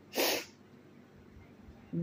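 A single short, sharp breath from a woman, lasting under half a second.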